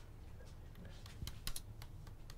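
A few faint, sharp clicks and taps, bunched together in the second half, over a low steady room hum.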